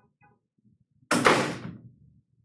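A single loud bang about a second in, dying away over most of a second, like a door shutting in the room.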